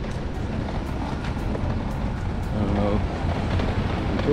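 Outdoor street noise: a steady low rumble, with a short stretch of a person's voice about three seconds in.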